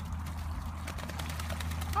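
Ducks bathing on a pond, splashing water in a rapid run of short splashes as they dip and flick water over themselves. A steady low hum runs underneath.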